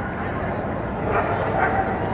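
A dog barking, two short barks a little past a second in, over the steady chatter and noise of a large hall.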